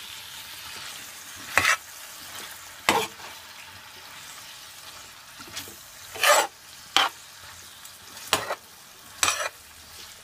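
Beef and pepper stir-fry sizzling steadily in a pan over medium heat, while a spatula scrapes and knocks against the pan about six times as it is stirred.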